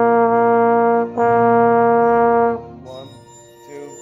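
Trombone playing two long sustained notes at the same pitch, with a brief break between them about a second in. The second note stops about two and a half seconds in.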